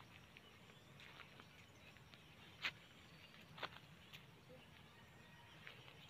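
Near silence: faint outdoor background with a few soft clicks, the clearest two about two and a half and three and a half seconds in.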